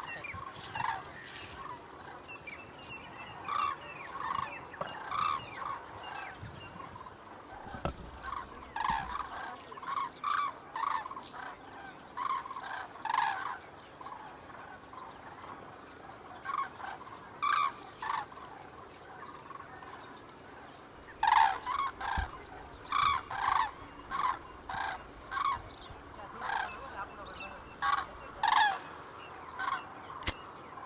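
Domestic fowl calling outdoors in a run of short, repeated calls. There is a brief lull in the middle, and the calls come louder and closer together in the last third.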